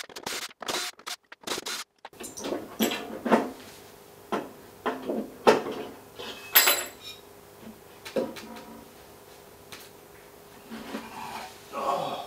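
Metal clinks and clatters from screws and the steel chassis of a mixer's power assembly being unscrewed and handled, as a series of separate knocks spread a second or so apart.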